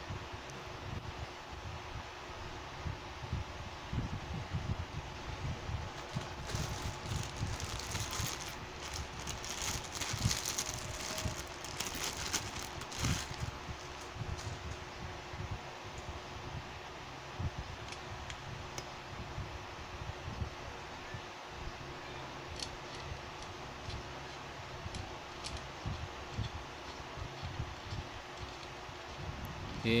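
Handling noise from a metal microphone and its chrome tripod stand being screwed together by hand, with a stretch of rustling about a third of the way in, over steady background noise.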